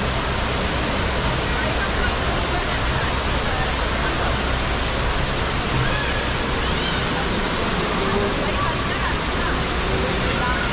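Steady rushing of water from a tall indoor waterfall cascading down a multi-storey wall, with faint crowd voices behind it.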